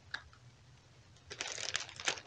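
Faint crinkling of a plastic sandwich bag worn over a hand as shortening is spread onto it with a spatula, starting about a second and a half in, after a single small click near the start.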